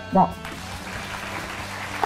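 Studio audience applauding, a steady spread of clapping that sets in about half a second in.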